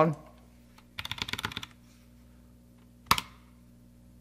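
A quick run of keystrokes on a computer keyboard, about a second in, then a single sharp click about three seconds in.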